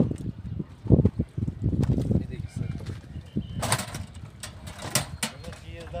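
Low voices with a few short, sharp clicks and clinks from a metal jewellery trunk and trays of silver jewellery being handled.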